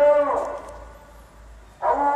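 A muezzin chanting the ezan (Islamic call to prayer): a long, held melodic phrase ends about half a second in and dies away with an echo, and the next phrase begins near the end.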